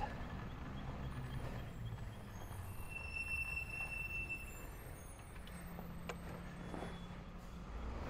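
Faint, steady low rumble of a vehicle engine, with a brief thin high tone about three seconds in.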